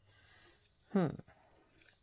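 A short hummed "hmm" about a second in, over faint rustling of a torn paper strip being handled.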